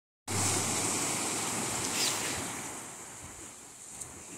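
Small waves breaking and washing up a sandy beach, the wash fading away toward the end.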